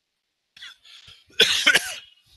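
A man coughing: a few faint sounds, then a short, loud run of coughs about a second and a half in.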